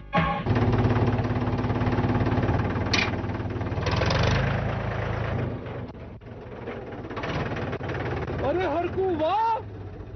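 Tractor diesel engine running with a steady low rumble, strongest in the first half and then easing off. A man's voice calls out near the end.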